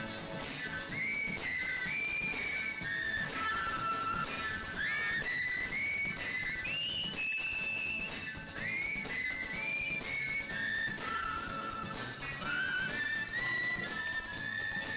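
Film music: a whistled melody that slides up into each note, played over an instrumental backing in a song interlude.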